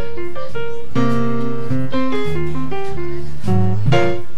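Hard-bop jazz piano trio playing live: piano chords and melody notes over bass, with a full chord struck about a second in.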